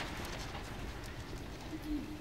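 Ambience of a large reading room: a steady low rumble with scattered faint clicks and taps and an indistinct murmur. Near the end a short, low, steady tone sounds for under a second.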